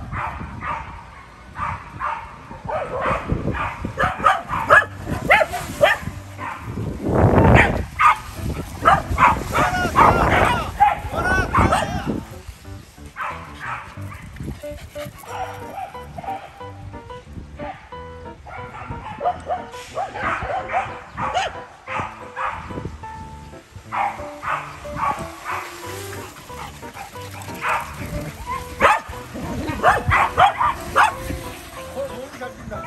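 A pack of corgis barking and yipping as they run together, many barks overlapping. They are busiest for the first dozen seconds and thin out in the second half.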